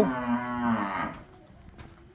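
Cattle mooing: one drawn-out, steady call that fades out a little after a second in.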